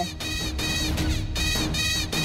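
Dramatic background score: a steady low drone with a high, shimmering figure pulsing about three times a second above it.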